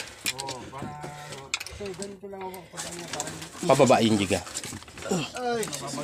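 Low, indistinct voices murmuring and talking, with a louder exclamation about four seconds in.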